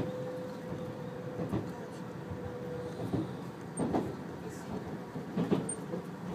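Odakyu RSE 20000 series Romancecar electric train running, heard from the front cab: a steady rumble of wheels on rail, with sharp knocks over rail joints every second or so. A steady hum dies away about halfway through.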